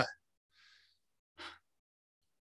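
A man's faint breathing: a soft intake of breath about half a second in, then a short breath out through the nose or mouth at about the middle.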